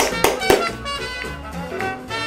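Live swing band playing up-tempo swing music for the dancers, with two sharp accents about a quarter and half a second in.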